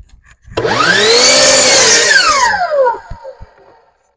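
Hitachi compound miter saw motor whining up to speed and the blade cutting through a wooden board at a 45-degree angle, then a falling whine as the motor winds down about three seconds in.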